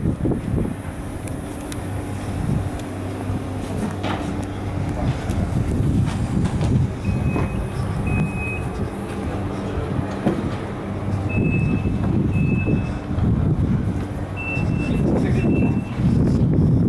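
A standing EN57 electric multiple unit hums steadily from its onboard electrical equipment. From about halfway in, short high electronic beeps sound in pairs about a second apart, like a train's door-warning signal.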